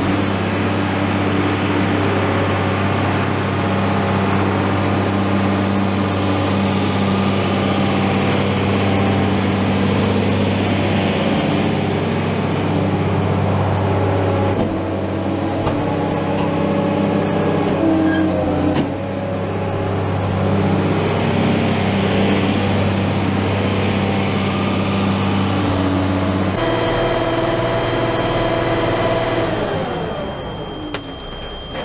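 Tractor engine running steadily while pulling a Schuler vertical feed mixer along the barn alley, a constant low hum. The tone changes abruptly about three and a half seconds before the end.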